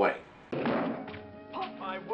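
Old TV show soundtrack cutting in abruptly about half a second in with a thump, then background music, with a man's voice starting near the end.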